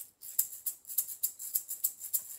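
Plastic egg shaker shaken in a steady rhythm, about four shakes a second, imitating a train chugging along.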